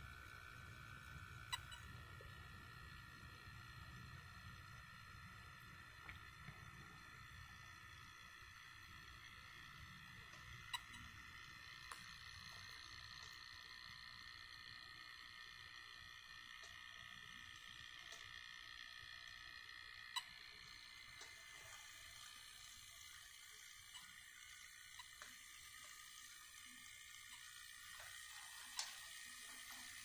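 A handful of short, sharp beeps from a Digitrax DT400 DCC throttle, each marking a new speed step during an automated speed test, spread several seconds apart over a faint steady high whine.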